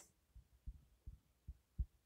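A few faint, short, low knocks, about five spread unevenly, from a stylus tapping on a tablet while handwriting.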